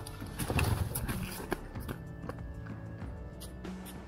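Knocks and scrapes of a motorcycle tipping over onto a dirt roadway, busiest in the first second and a half, under background music.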